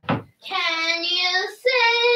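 A high voice singing two long held notes, the second higher than the first.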